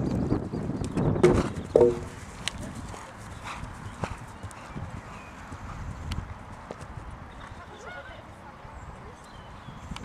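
Hoofbeats of a horse cantering on turf. Wind buffets the microphone for the first two seconds, and a short pitched call sounds near two seconds in.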